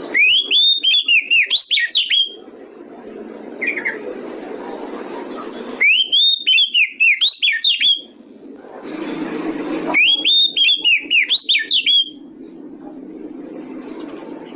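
Oriental magpie-robin singing in three loud bursts of about two seconds each. Each burst is a fast run of high, sharply rising and falling whistled notes, with a short soft call between the first two. A steady low hum of background noise fills the gaps.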